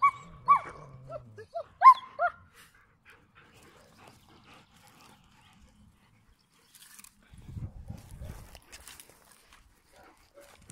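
A German shepherd dog giving a quick run of about six short, high yips in the first two seconds. A low muffled rumble follows around seven to nine seconds in.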